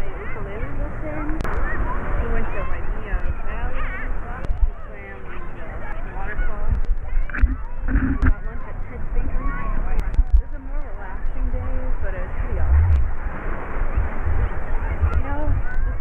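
A woman talking, muffled, over a low rumble of sea water sloshing against the camera.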